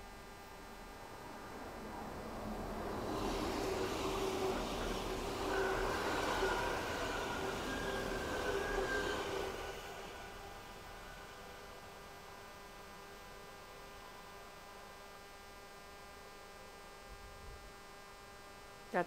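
DB Class 423 S-Bahn electric train passing close by on the track. The wheel and rail noise builds over the first few seconds, carries a steady whine through the loudest part, then fades after about ten seconds.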